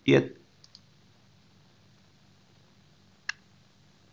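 A brief voice sound right at the start, then faint ticks and one sharp computer mouse click a little over three seconds in, which is the click that restarts Visual Studio.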